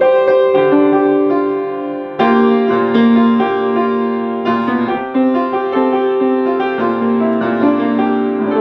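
Grand piano played solo: held chords over a low bass line, with new chords struck every second or so and left ringing.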